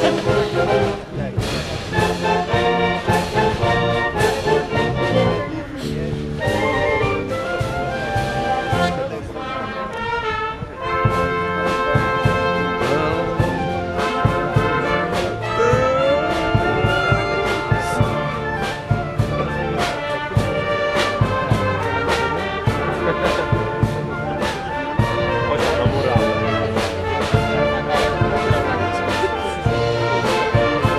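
Wind band playing a march, brass to the fore, over regular drum beats; about halfway through one part slides upward in pitch.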